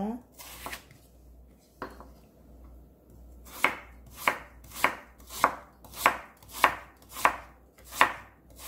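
Chef's knife cutting through Korean radish and knocking on a wooden cutting board: a few scattered cuts, then from about three and a half seconds in a steady chopping rhythm of a little under two strokes a second.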